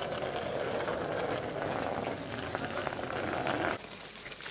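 Steady outdoor road noise, a dense rumble with scattered light clicks, cutting off abruptly near the end.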